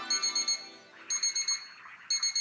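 Electronic alarm clock beeping in quick runs of about five high beeps, one run roughly every second. The last notes of a music cue fade out under the first run.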